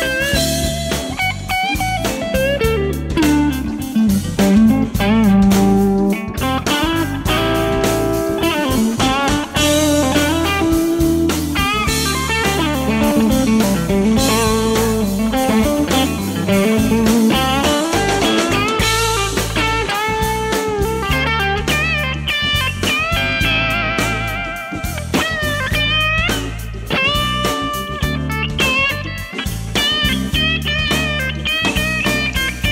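1999 Fender Custom Shop '63 Telecaster electric guitar played through a 1963 Fender Vibroverb amp. It plays single-note lead lines with string bends and vibrato over low sustained notes.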